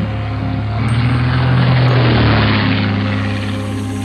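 Propeller aircraft engine sound swelling to a peak about two seconds in and then fading away, heard over steady background music.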